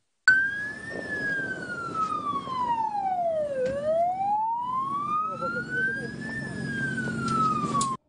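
An emergency siren starts suddenly and wails slowly, rising and falling in pitch. It sinks low about halfway through, then climbs again before falling once more, with a steady low background noise underneath.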